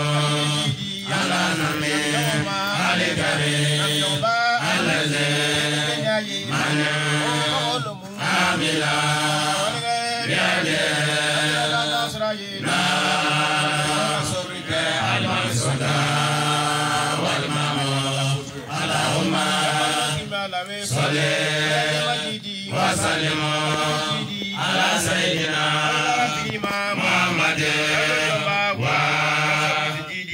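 Several men's voices chanting an Arabic religious chant together through microphones, in a repeating melodic phrase that restarts about every two seconds over a steady held low note.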